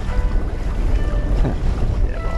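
Wind buffeting the microphone with water rushing along the hull of a catamaran under sail, over a bed of background music.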